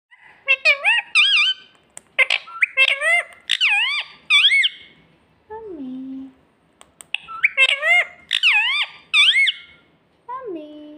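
Indian ringneck parakeet calling: rapid runs of loud, high, rising-and-falling calls in two bursts, with a lower, falling note in the pause between them.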